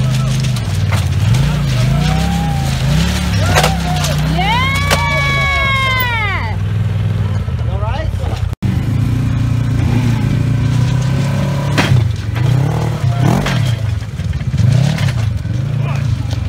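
Polaris RZR UTV engines idling and revving up and down repeatedly while one RZR tows another, wrecked one, off railroad tracks on a strap, with voices calling out. The sound cuts out for an instant just past halfway.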